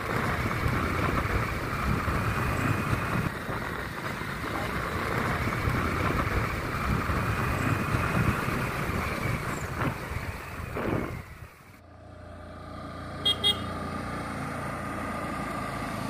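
Motorcycle engine and wind noise while riding, running steadily for about eleven seconds, then cutting away to a quieter steady engine hum with a short double horn toot about a second later.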